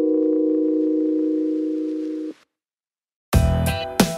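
Background music: a held electronic chord of steady tones that stops a little past two seconds in, then about a second of silence before a new section with a drum beat starts near the end.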